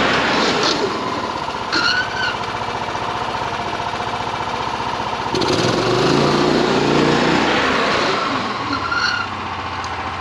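Harbor Freight Predator 420 single-cylinder engine running under load as the golf cart it powers drives by, its steady drone swelling midway as the cart comes nearer. Two short squeaks sound, about two seconds in and again near the end.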